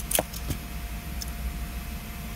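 Ignition key and keyring clicking twice within the first half second of a turn of the key, then only a steady low hum. No starter cranking follows: the car has a no-crank fault.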